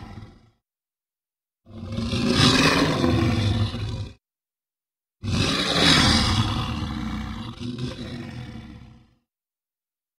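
Tyrannosaurus rex roar sound effect. The tail of one roar fades out in the first half second, then come two long, loud roars with dead silence between them. The second roar is about four seconds long and trails off.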